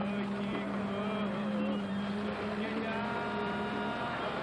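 Concrete-pouring machinery running with a steady motor hum.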